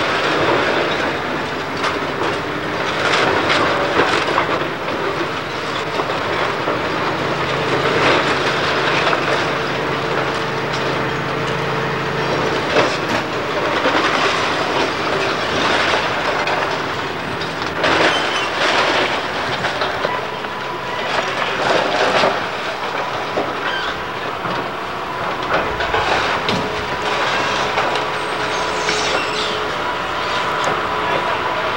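A hydraulic excavator demolishing a brick and timber building: the engine running under load under repeated crashes of falling masonry and splintering wood, with a thin whine coming and going.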